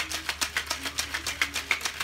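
Ice rattling hard inside a cocktail shaker being shaken fast and evenly, about six or seven rattles a second, chilling a gin gimlet.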